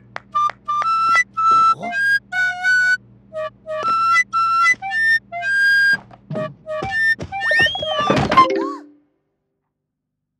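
A small wind instrument, like a recorder, plays a halting melody of short separate notes over a steady low hum. Near the end it breaks into swooping squeals that slide up and down. The sound then cuts off abruptly, about a second before the end, into silence.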